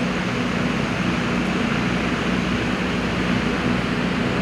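Steady, even background hiss with a low hum underneath, unchanging throughout.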